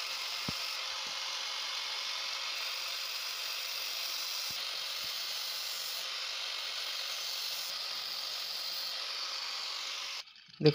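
DeWalt angle grinder with a thin cutting disc running steadily while cutting into the plastic valve cap of a spray can: an even, unchanging hiss-like whir that starts and stops abruptly.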